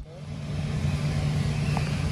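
A steady low machine hum with a faint hiss.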